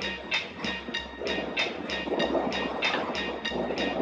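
Steady rhythmic ticking, about four ticks a second, over a faint low hum.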